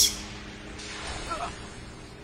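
Anime soundtrack effects: a sharp whoosh at the very start that dies away into a low, even rushing hiss, with a brief faint voice-like sound about a second and a quarter in.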